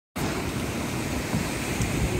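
Ocean surf breaking and washing up the beach: a steady rushing noise with a low rumble.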